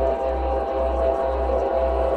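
Ambient music of sustained drone tones over a deep low tone that pulses about twice a second. It is the kind of 'frequency' bed used under subliminal-affirmation audio.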